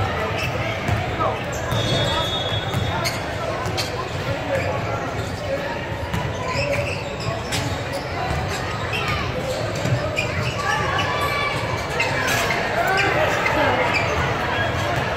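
Basketball game in a large, echoing gym: a ball dribbled on the hardwood court, short sneaker squeaks, and players' and spectators' voices in the background.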